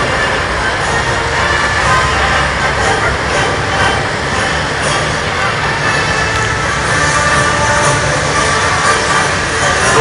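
Heavy tracked military vehicles driving past with a steady low engine and track rumble, mixed with the voices of a large crowd.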